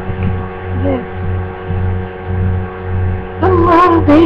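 Steady electrical hum with a low throb that pulses about every three-quarters of a second. Near the end a woman's voice starts, drawn out and wavering in pitch.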